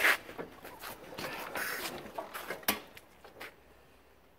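Knocks, scuffs and clicks from a rider getting astride a 1961 Panther 650 motorcycle and setting his boot on the kickstart, the engine not yet running. A sharp knock at the very start, scuffing about a second in, and a single sharp click a little before three seconds in.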